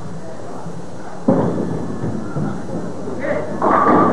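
Bowling ball landing on the lane with a thud about a second in and rolling, then crashing into the pins near the end.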